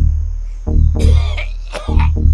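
A man coughing into a tissue about a second in, twice, over a slow throbbing double-beat bass pulse like a heartbeat that repeats about once a second in the soundtrack.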